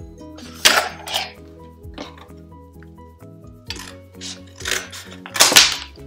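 Scissors cutting into a cardboard shoebox flap: several short, crisp snips and cardboard crackles, the loudest near the end, over soft background music with held notes.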